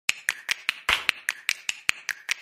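Rapid, evenly spaced snapping clicks, about five a second, with one louder, longer hit a little before the middle.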